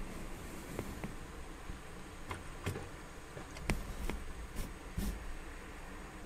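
Low background room tone with a scattered series of light clicks and knocks, about eight, irregularly spaced.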